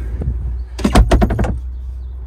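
A quick run of about half a dozen knocks and rattles, a little under a second in, over a steady low rumble.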